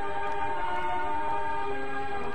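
Film soundtrack music of slow, sustained held chords, shifting to a new chord about a second and a half in.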